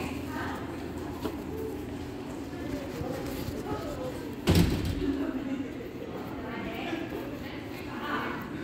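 Indistinct voices of people nearby, with a single loud thump about four and a half seconds in, a door banging shut.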